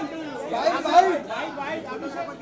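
Voices of several people talking over one another: general chatter.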